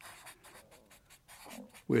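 Black felt-tip marker scratching across paper in quick, short, irregular strokes as fur and ears are sketched.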